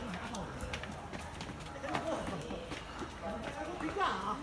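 Footsteps of several people climbing a staircase, with voices talking throughout.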